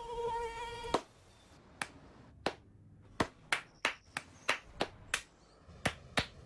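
A mosquito's high buzzing whine for about a second, cut off by a sharp hand clap, followed by about ten single hand claps that come faster toward the end: hands clapping in the air to swat mosquitoes.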